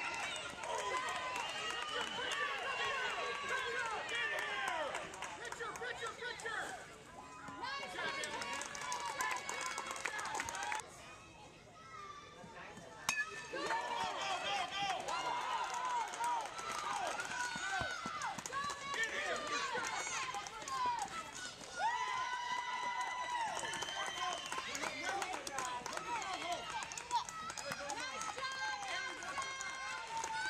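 Spectators and players shouting and cheering, several voices overlapping, with a few long drawn-out calls. There is a quieter lull about eleven seconds in.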